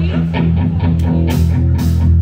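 Live rock trio playing: upright bass holding low notes under electric guitar and a drum kit, with cymbal hits coming in about a second in.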